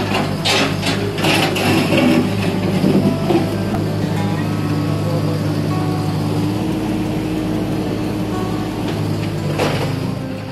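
Rubber boots splashing through shallow drain water, several splashing steps in the first few seconds and another near the end, over a steady low hum.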